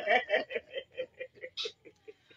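A man chuckling: a run of short laughs, about five a second, that gradually fade away.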